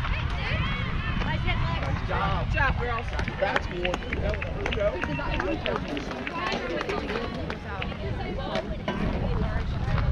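Indistinct voices of players and spectators chattering and calling, over a steady low rumble.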